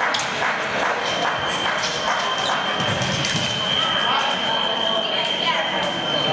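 Foil fencing bout in a large hall: footwork and blade clicks on the metal piste among voices. A steady high electronic tone sounds through most of it.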